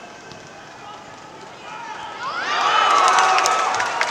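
Excited shouting as a football attack builds: after a couple of quieter seconds, voices rise about two seconds in into a loud, drawn-out shout that peaks just before the shot. Sharp clicks run through the loud part.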